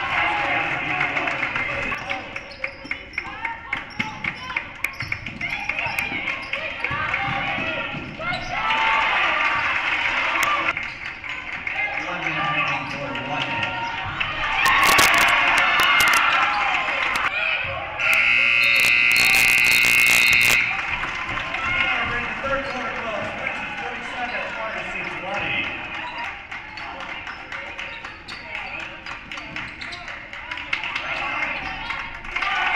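Basketball gym game sound: a ball dribbling and feet on the hardwood floor, with shouting and cheering from the crowd that swells in bursts. A little past the middle, a scoreboard horn sounds steadily for about two and a half seconds.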